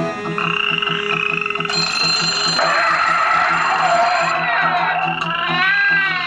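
Live band instrumental break: piano accordion holding chords over strummed acoustic guitar, with a steady low pulse of a few beats a second and gliding tones near the end.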